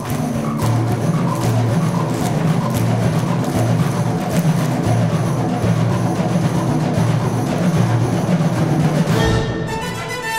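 Symphonic wind band playing a driving passage: pulsing low notes under a steady run of sharp percussion strokes. Near the end the low pulse drops away and held chords come in.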